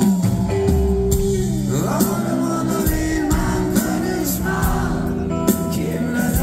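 Live rock band playing through a concert PA, heard from the audience: electric guitars and drums with a sung vocal line coming in about two seconds in.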